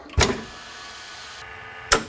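VacMaster chamber vacuum sealer: the lid comes down with a knock and the vacuum pump runs steadily, drawing a light vacuum on a low setting, with its hiss thinning about three quarters through. A sharp clack follows just before the end.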